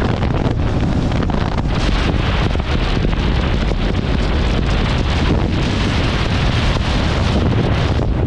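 Steady wind rushing over the microphone of a moving motorcycle, with the bike's running noise underneath.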